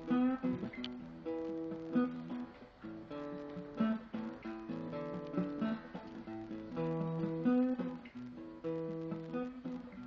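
Solo acoustic guitar played by hand, strummed and picked, with the chords changing every second or so.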